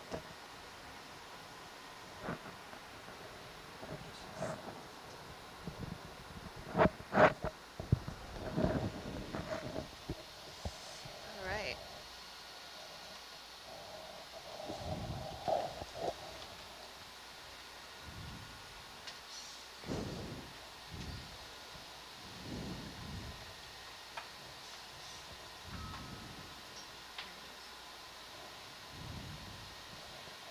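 Faint, indistinct voices and occasional short knocks over a steady hiss, the strongest cluster about 7 seconds in and fewer events in the second half.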